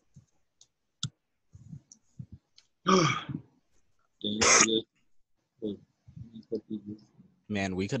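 Computer keyboard typing and clicking while code is entered. Two short, louder wordless vocal sounds come about three and four and a half seconds in, and speech starts near the end.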